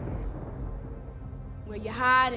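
Soundtrack of a projected film heard over a church's loudspeakers: a low, steady rumble under faint held music tones, with a voice beginning just before the end.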